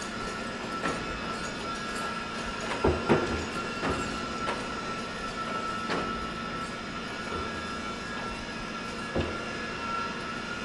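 Industrial shop machinery running steadily with a continuous high whine and hum. Several sharp metallic clanks and knocks fall through it, the loudest pair about three seconds in.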